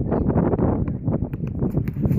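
Wind buffeting the phone's microphone in a steady low rumble, with a few faint sharp taps in the second half from the basketball play on the asphalt court.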